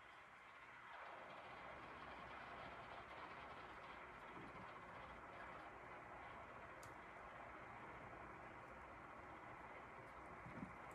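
Near silence: steady faint room noise, with one faint tick about two thirds of the way through.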